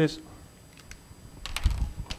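A few sharp clicks and taps in a quiet lecture room, bunched near the end with low thuds underneath.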